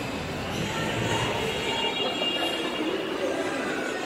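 Mall carousel running: a steady mechanical rumble from the turning platform, with a thin high squeal in the middle.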